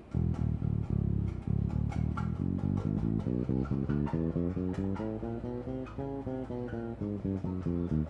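Five-string electric bass guitar playing an even run of single plucked notes, about four a second: a four-fingers-on-four-frets exercise carried down onto the low B string.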